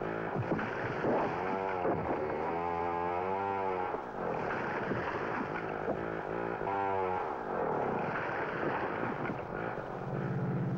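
Two-stroke chainsaw cutting through a tree trunk, its engine revving up and down again and again so that the pitch rises and falls with each surge.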